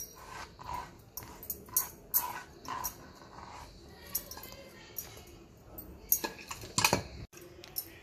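Kitchen handling sounds as soft gourd seeds and pulp are scraped by hand off a wooden cutting board into a mixer-grinder jar: light scrapes with scattered clicks and knocks, the loudest cluster near the end.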